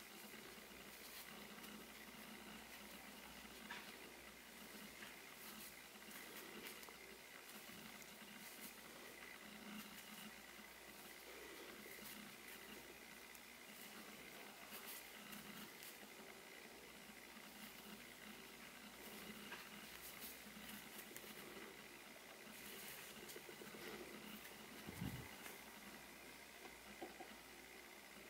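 Near silence, with faint scattered ticks and rustles of a crochet hook working through yarn, and a single soft low thump near the end.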